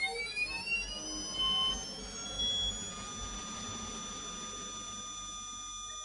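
Electronic sound effect: a synthetic whine that climbs in pitch, levels off about two seconds in and then holds as a steady buzzing tone. Two short brighter beeps sound along the way.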